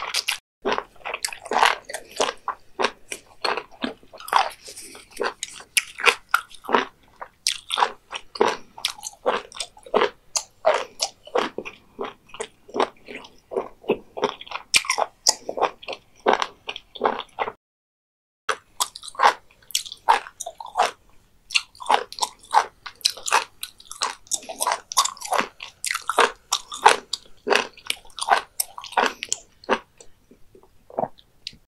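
Close-miked chewing of raw beef liver and omasum: wet, crunchy mouth sounds in quick succession. They break off for about a second a little past halfway.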